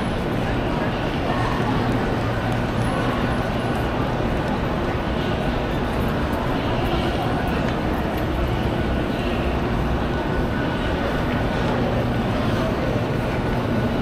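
Steady hubbub of a crowd talking and walking on a busy metro platform, with a low steady hum underneath.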